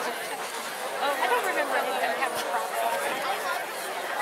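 Crowd of spectators chattering in the stands: several voices overlapping in an indistinct babble at a steady level.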